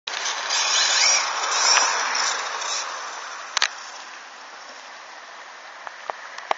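Traxxas 1/16 E-Revo VXL electric RC truck running on a 3S battery, its brushless motor whining up and down in pitch over tyre noise on asphalt. It is loud for the first three seconds, then fades as the truck drives away, with a single sharp click about three and a half seconds in.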